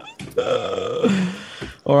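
A person's long wordless vocal sound, lasting about a second and a half and dropping in pitch near the end.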